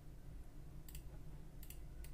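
A few faint computer mouse clicks, one about a second in and a quick cluster near the end, over a faint steady low hum.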